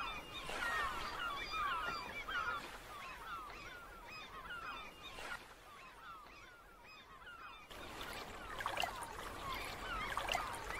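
A flock of birds calling, many short calls overlapping; the calls thin out in the middle and grow busy again near the end.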